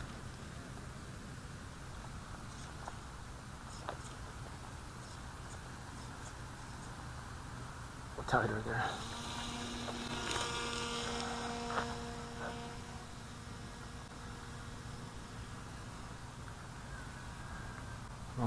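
Faint, steady hum of a small RC model aircraft's motor and propeller in flight. A higher, steady whine of several pitches joins in for about two seconds around ten seconds in.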